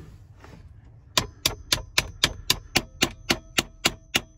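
Small hammer tapping a metal hinge rod through a pickup's center console lid. There are eleven quick, even taps, nearly four a second, starting about a second in, each with a short metallic ring.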